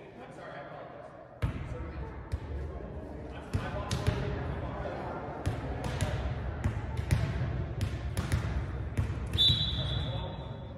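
Volleyball rally in a gymnasium: the serve is struck about a second and a half in, then a string of sharp, echoing ball hits and bounces over the voices of players and spectators. A referee's whistle blows shortly before the end.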